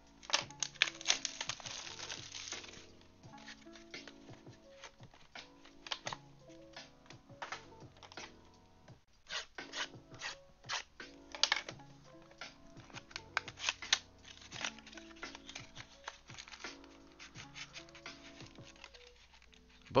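Crackling and tearing of plastic shrink-wrap being pulled off a trading-card hobby box, in many short sharp bursts, over soft background music with sustained notes.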